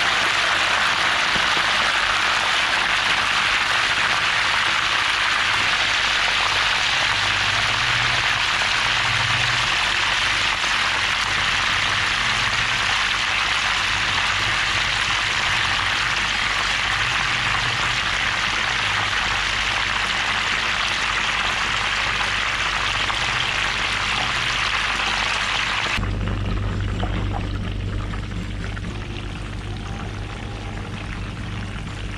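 A whole chicken deep-frying in a wok of hot oil: steady, loud sizzling and bubbling of the oil. Near the end it cuts abruptly to a quieter sizzle as the frying is less vigorous.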